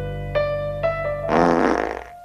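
Soft keyboard music plays a few sustained notes; about a second and a half in, a loud fart lasting about half a second breaks over it.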